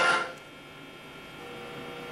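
Noisy played-back audio from a loudspeaker cuts off a fraction of a second in. Low room hum follows, with a faint steady tone entering near the end.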